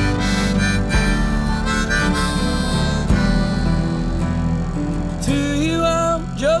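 Harmonica instrumental break in a country song, playing sustained and sliding notes over acoustic guitar.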